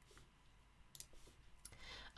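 Near silence: faint room tone with two light clicks of computer keyboard keys, one about a second in and a softer one near the end, as a terminal command is typed.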